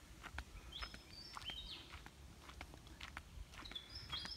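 Faint outdoor ambience: birds give short high whistled calls about a second in and again near the end, over soft footsteps on a dirt track and a low rumble of wind.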